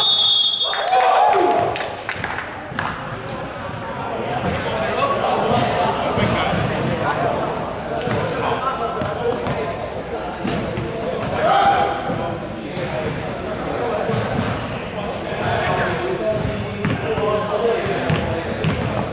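Indoor basketball game in a large, echoing hall: the ball bouncing on the wooden court, sneakers squeaking in short high chirps, and indistinct voices of players and spectators.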